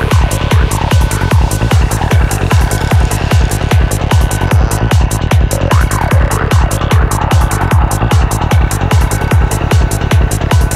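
Forest psytrance track with a steady kick drum at about two and a half beats a second and bass notes between the kicks, with falling synth glides near the start and again about six seconds in.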